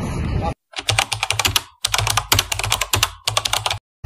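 Rapid clicking like typing on a computer keyboard, in a few quick runs, each broken off abruptly by dead silence.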